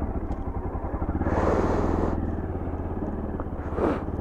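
Bajaj Pulsar 200NS single-cylinder engine running at idle, with a brief hiss about a second in and a rise in engine pitch near the end as the bike pulls away.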